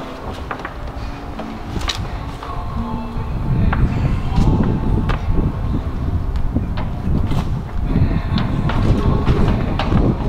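A large sheet of car-wrap vinyl film being lifted and shifted by hand, crackling with a few sharp clicks and turning into a louder, rough rustle about three and a half seconds in, over background music.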